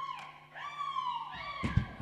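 Sustained electronic keyboard tones gliding downward in pitch: one held note falls away, then a second note slides down over about a second. A few short knocks near the end.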